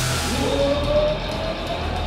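Live rock band playing amplified through the hall: a cymbal crash right at the start, then a single held note that slides slowly upward over the bass and drums.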